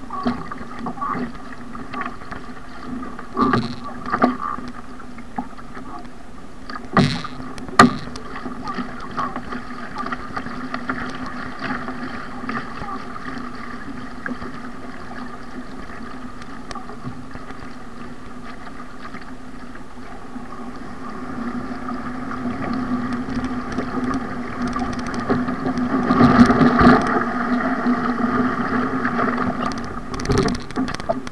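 Water rushing and splashing against the hull of an ocean ski, heard from a bow-mounted camera, with paddle strokes and a few sharp slaps in the first eight seconds. It grows louder in the last third as the ski runs in through breaking surf.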